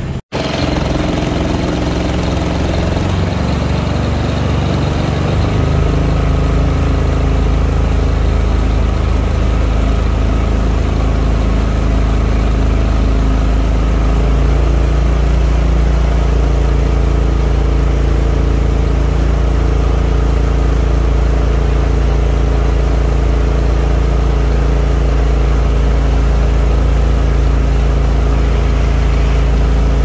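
Small engine of a Mokai motorized kayak running under way. It throttles up in two steps, about five seconds in and again about fourteen seconds in, then holds a steady cruising speed.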